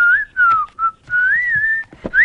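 A person whistling a tune by mouth: a few short falling notes, then a longer wavering note in the second half.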